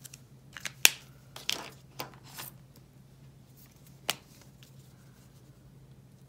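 Caliart art markers being capped, uncapped and set down on a table: a loud click about a second in, a few softer clicks and rustles over the next two seconds, and one more sharp click around four seconds in.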